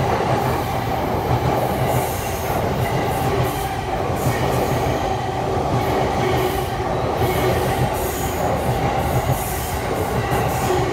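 JR East E257-series limited express electric train passing through a station at speed without stopping: a steady, loud rush and rumble of wheels on rail, with scattered short clacks as the cars go by.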